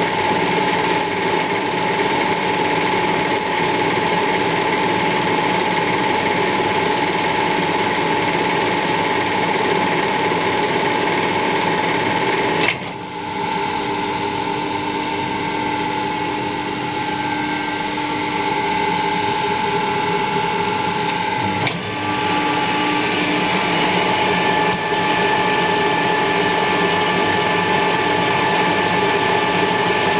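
Metal-working lathe running under power, with a steady mechanical whine from its drive and gears, while the single-point tool takes a pass on a 7/8-inch UNF thread. A sharp click about 13 seconds in changes the tone of the running, and another click about 22 seconds in brings the earlier tone back.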